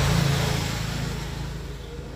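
A road vehicle passing by: its engine and road noise are loudest at the start and fade away over the two seconds.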